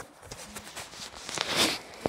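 Handling noise from a phone held against bedding: soft fabric rustles and small clicks, with a louder rustle about one and a half seconds in.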